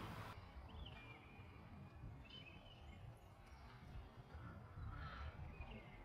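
Near silence: faint outdoor ambience with a low rumble and a few faint bird chirps, one about a second in and more a second or so later.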